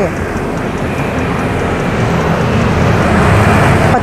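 Street traffic: the engine and tyre noise of a passing road vehicle, a steady rush that grows a little louder over the few seconds.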